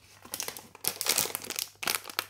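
Plastic snack packets crinkling as they are handled, an irregular run of crackles.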